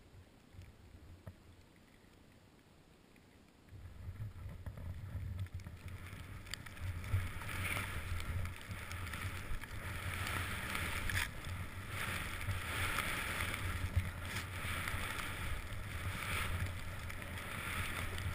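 Skis running through deep fresh powder, a rushing, uneven swish with wind against the camera microphone. It starts about four seconds in, after near silence, and then keeps going in surges.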